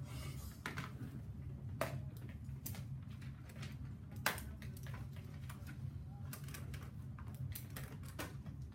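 Scattered light clicks and taps of papers and pencils being handled at classroom desks, over a steady low room hum; the sharpest tap comes about four seconds in.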